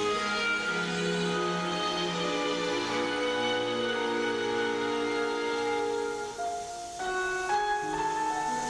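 Orchestral classical music from a piano concerto, with long held string notes. It softens briefly about six and a half seconds in before new notes enter.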